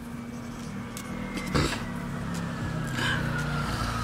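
Motor vehicle noise heard from inside a car: a steady low hum that swells slowly, with a faint whine falling in pitch.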